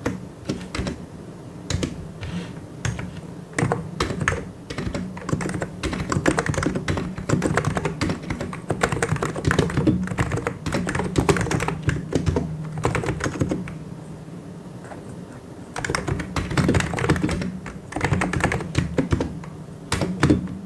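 Two-handed typing on a mechanical keyboard: fast, continuous runs of key clicks that thin to a few scattered presses about two-thirds of the way through, then pick up again in a quick run near the end.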